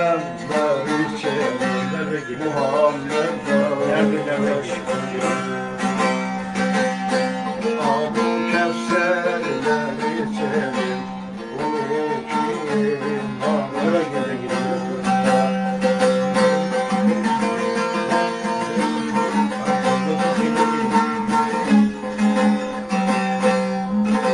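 Bağlama (long-necked Turkish saz) played with a steady plucked strum, a low drone note ringing continuously under the melody, as accompaniment to a Turkish folk song.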